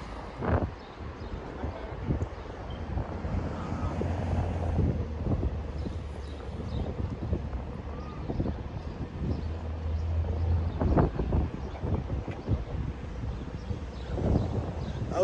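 City street ambience: the low rumble of passing traffic, swelling twice, with wind buffeting the microphone and a few brief knocks.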